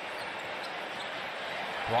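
Basketball dribbled on a hardwood court, a few faint bounces over steady arena ambience.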